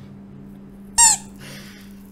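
A squeaky toy bitten down on once, giving one short, high squeak about a second in, over a low steady hum.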